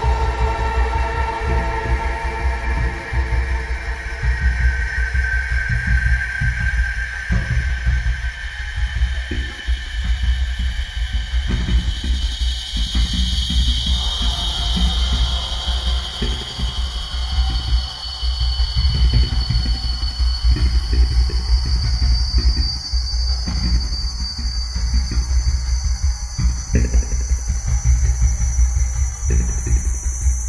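Experimental electronic music: a heavy, fluttering low drone with fast pulsing texture, and thin high tones that slowly climb in pitch.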